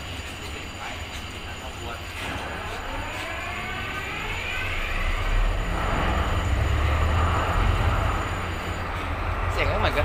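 MTU 16V4000 V16 diesel engine of a CRRC CDA5B1 locomotive starting: a rising whine as it winds up over a few seconds, then the engine fires about five seconds in and settles into a loud, low running rumble.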